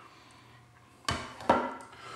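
Two sharp clinks of kitchenware, about half a second apart, each with a short ring, as beans and gravy are dished up into a bowl.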